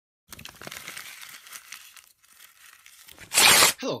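Paper crumpling and crackling, then, near the end, one short, loud rip of paper tearing.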